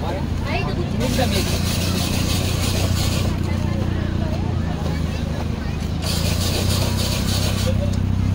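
Several people talking casually over a steady low hum, with two spells of hiss, about a second in and about six seconds in.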